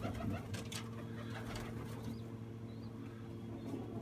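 Domestic pigeons cooing softly in a loft, over a steady low hum and a few light clicks.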